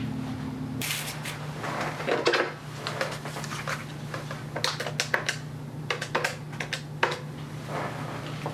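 Corded desk telephone being handled: a clatter as the handset is lifted, then a string of sharp clicks as the number is dialled, over a steady low hum.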